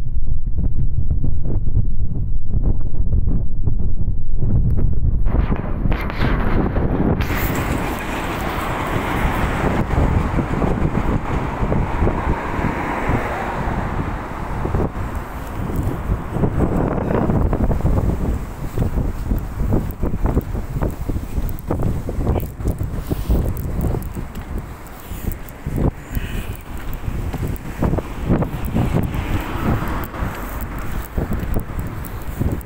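Wind buffeting a handheld phone's microphone, a loud, uneven low rumble. From about seven seconds in, a broader rushing noise joins it.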